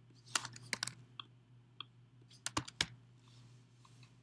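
Typing on a computer keyboard: about ten quiet, irregular keystrokes over the first three seconds, as two short answer words are typed, over a faint steady hum.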